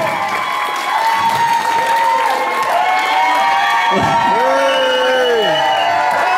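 Audience cheering, whooping and applauding, many voices shouting over the clapping, with one long drawn-out call around four seconds in.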